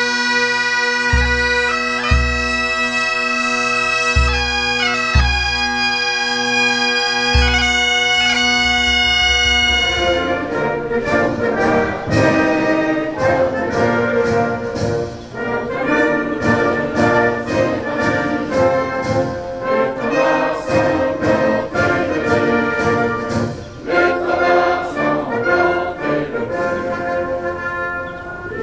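Pipe band bagpipes playing a tune over their steady drone, with a bass drum beat about once a second. About ten seconds in this cuts off abruptly and different, orchestral-sounding music takes over.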